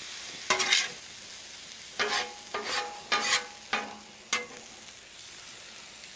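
Metal spatula scraping and tapping across a Blackstone steel griddle top while stirring zucchini and yellow squash noodles. It comes in about six short strokes, each with a brief metallic ring, over a light steady sizzle. The strokes stop about four and a half seconds in.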